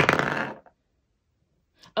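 A twenty-sided die rolled onto a paper game board on a table, a sudden clatter that rattles for about half a second and dies away.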